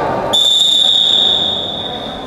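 Wrestling referee's whistle: one long, steady, high blast starting about a third of a second in and lasting around two seconds, calling a stop to the action on the mat.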